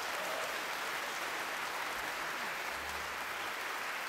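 Audience applauding, a steady dense clapping.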